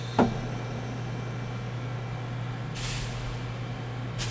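Steady low hum from the centrifuge gondola's audio feed, with one sharp click just after the start and a short hiss about three seconds in.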